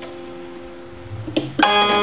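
Semi-hollow electric guitar played with the fingers: notes ring and fade, then about one and a half seconds in new notes are plucked and ring out louder.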